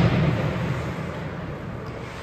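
Low, booming echo of a loud bang in an ice hockey arena, fading over about the first second, then the rink's steady low background rumble.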